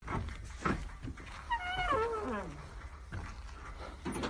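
A single wavering cry that slides steeply down in pitch over about a second, partway through.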